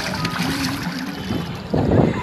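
Swimming-pool water splashing and sloshing, mixed with children's voices, with a louder burst near the end.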